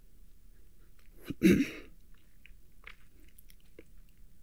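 A man's short vocal sound about a second and a half in, then a few faint wet mouth clicks over room quiet.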